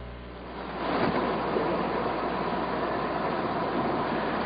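Steady background noise, a low hiss with a faint hum, that comes up about a second in after the last of a louder sound fades out.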